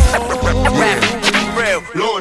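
Hip-hop music: a beat with a kick drum hit at the start and a deep bass line under a vocal line that bends in pitch.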